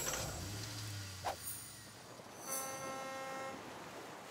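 Faint sound effects of an animated logo intro: a short click about a second in, then a soft pitched chime-like tone lasting about a second.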